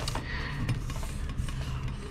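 A hand sweeping spilled dehydrated food pieces across a desktop: faint soft brushing and scraping with a few light ticks of dry bits.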